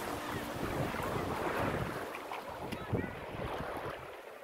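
Small waves lapping and splashing against a rocky lake shore, with wind buffeting the microphone.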